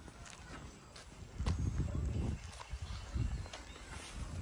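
Footsteps on a paved road: a run of irregular light taps and scuffs from people walking.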